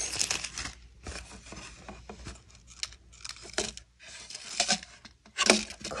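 Plastic zip-lock bags and paper seed packets crinkling and rustling as they are handled, in short irregular rustles and clicks.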